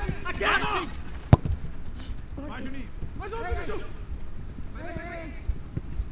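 A football struck hard by a foot once, a sharp thud about a second in, with a smaller knock of the ball near the end, amid short shouts from players.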